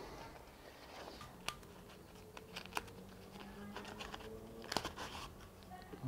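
Faint rustling of a black fabric pouch as a steel plate is worked out of it by hand, with a few light, sharp clicks spread through, the last near the end.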